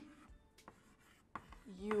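Chalk writing on a blackboard: faint scratching of the chalk with two sharp taps as it strikes the board.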